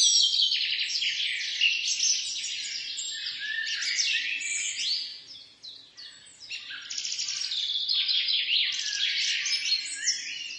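Many small birds chirping and trilling over one another in a dense, continuous chorus, with a brief lull about halfway through.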